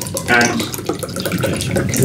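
Water poured from a plastic jug into a drinking glass, splashing throughout under a short bit of speech.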